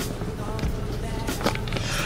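Cloth rubbing over a phone camera and its microphone as the lens is wiped clean: rustling handling noise with scattered light knocks over a low rumble.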